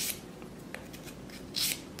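The finer-grit side of a sanding stick rubbed against a small 3D-printed resin part, smoothing its surface: faint strokes, with one short, clearer scratchy stroke about one and a half seconds in.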